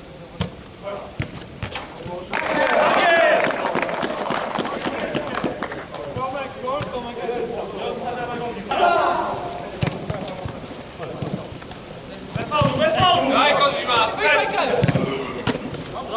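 Football players shouting to one another during play, with scattered sharp thuds of the ball being kicked on artificial turf.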